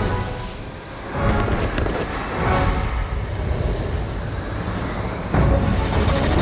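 Film trailer score mixed with the rushing noise of fireworks rockets and explosions, growing louder about a second in and again near the end.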